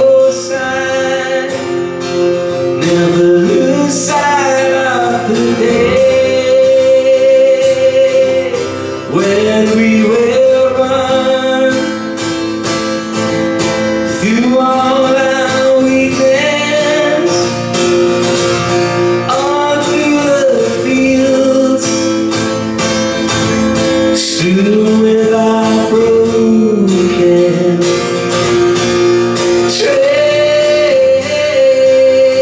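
A man singing a slow song live to his own strummed guitar, solo with no other instruments.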